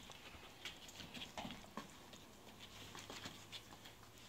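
Faint, scattered patter and light scuffs of Border Collie puppies moving about on foam floor mats.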